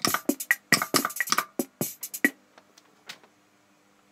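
Electronic drum-machine beat from an Omnichord's built-in rhythm section: a quick pattern of sharp, clicky percussion hits that stops a little over two seconds in, with one more hit near the end.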